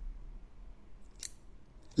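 A short, sharp mouth noise about a second in, over a low steady room background, with a fainter one just before speech resumes.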